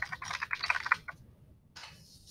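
Computer keyboard being typed on quickly, a rapid run of key clicks that stops about a second in.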